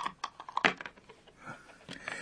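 Ludo dice and counters clicking on a board: a handful of sharp, separate clicks in the first second, the loudest about two-thirds of a second in.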